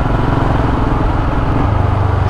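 Royal Enfield Himalayan's single-cylinder engine running steadily as the motorcycle is ridden along, under a steady rush of wind noise.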